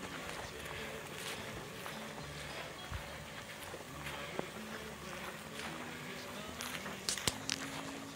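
My 4 Sons M4 battery backpack sprayer running, its pump giving a steady low hum under the hiss of water spraying from the wand nozzle, with footsteps through grass and a couple of sharp clicks near the end.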